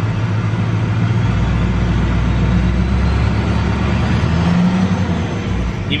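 Duramax 6.6-litre V8 turbodiesel running, heard from inside the cab, its note shifting and rising a little about four and a half seconds in as it takes light throttle. Under slight acceleration this engine is said to have a tick, possibly just a noisy injector.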